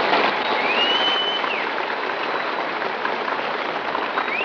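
Studio audience applauding an entrance on an old radio broadcast recording, a steady clatter of hands with a whistle that rises, holds and falls about a second in.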